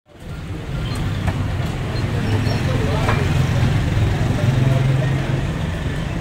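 Knives cutting chicken on wooden butcher's blocks, with a few sharp knocks about a second in and again around three seconds, over a steady low rumble and background voices.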